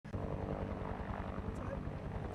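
Helicopter running: a steady engine hum with a rapid low beat.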